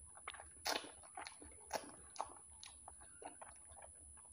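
Close-miked chewing and wet mouth sounds of people eating soft fried eggs: irregular sticky smacks and clicks, the loudest about two-thirds of a second in and again near the middle.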